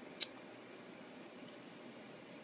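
Faint steady hiss of room tone, with a single sharp, high-pitched click a fraction of a second in.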